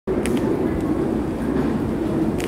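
Steady low rumble of background noise, with two short hissing sounds about a quarter of a second in.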